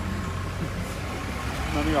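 An engine idling steadily with a low hum, and voices coming in near the end.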